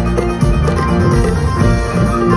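Live band playing a song over a concert sound system, loud and continuous.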